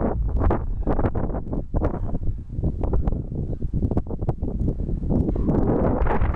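Wind buffeting the camera microphone in uneven gusts, a loud, rough rumble.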